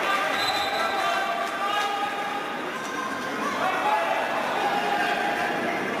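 Players calling and shouting to each other in an echoing sports hall during futsal play, with faint knocks of the ball on the hard court.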